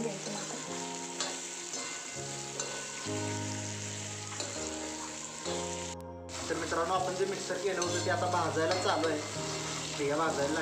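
Green chillies, garlic and peanuts sizzling as they are stir-fried in an iron kadhai, stirred with a metal slotted spatula, under background music with sustained notes. The sound cuts out briefly about six seconds in, and voices follow.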